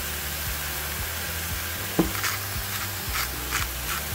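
Thick raw ground-beef burger patties sizzling in a hot skillet just after going in, a steady hiss with a few short crackles in the second half.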